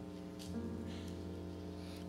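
Soft, sustained keyboard chords playing as background music, with a new chord coming in about half a second in.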